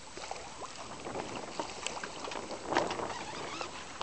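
Small waves lapping and splashing against a boat's hull in an irregular patter of little slaps, the loudest splash a little under three seconds in, over light wind on the microphone.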